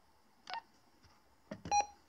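Two-way radio electronic beeps: a short blip about half a second in, then a click and a brief beep near the end, as the PMR446 transceiver is stepped to the next channel.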